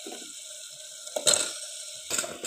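Masala with freshly added potato pieces simmering and sizzling in a pressure cooker, with one loud sharp knock a little over a second in.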